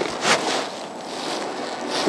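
Steady wind and water noise on a kayak-mounted camera's microphone on choppy river water, with a sharp click right at the start.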